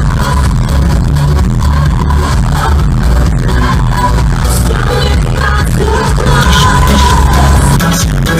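Live pop music played loud through a concert sound system, heavy in the bass, with a woman singing into a microphone, recorded from the audience.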